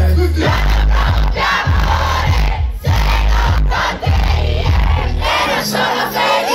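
Live rap concert heard from within the audience: a heavy bass beat pumping from the PA under a crowd shouting along. The bass drops out about five seconds in, leaving the crowd voices.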